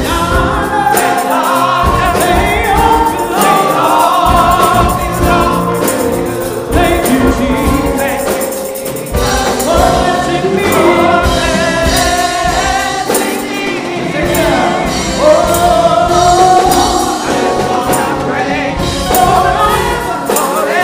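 Gospel choir of men and women singing through microphones, with electronic keyboard accompaniment.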